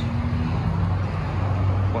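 Steady low rumble of street traffic, with an engine hum and no sudden events.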